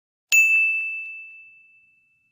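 A single bright, bell-like ding sound effect, struck once about a third of a second in and ringing out in one clear high tone that fades over about a second and a half, with a couple of faint ticks just after the strike.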